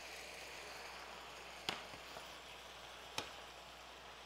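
Faint, steady sizzling of shrimp and vegetables frying in butter and oil in two pans, with two sharp knocks from the pans about a second and a half apart.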